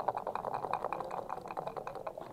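Backgammon dice being shaken in a dice cup: a quick, continuous rattle of small clicks.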